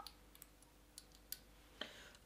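Near silence broken by a few faint, small clicks: the dropper cap of a Make Up For Ever skin booster serum bottle being handled and drawn out.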